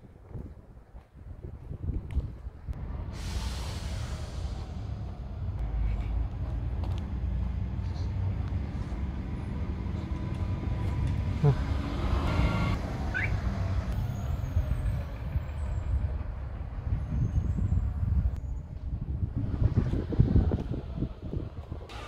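Street traffic: a large vehicle's engine running close by, with a short hiss about three seconds in.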